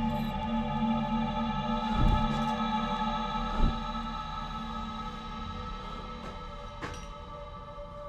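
Eerie ambient background music: a bed of several sustained drone tones held steady throughout. Two low thumps sound about two seconds and three and a half seconds in, with a brief click near the end.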